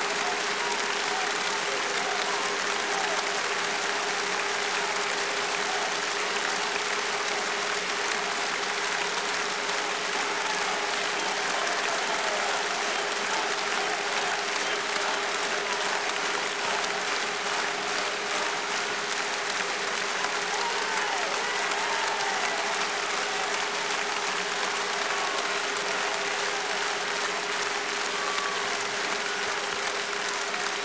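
Concert audience applauding steadily for about half a minute after a song, with one faint steady tone held beneath the clapping.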